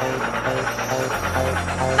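Instrumental stretch of an electronic dance remix: sustained synth notes, with a deep bass note coming in a little past one second in.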